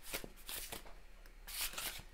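A deck of tarot cards shuffled by hand: soft, quick slides of card against card in short runs. The runs are loudest just after the start and again from about one and a half seconds in.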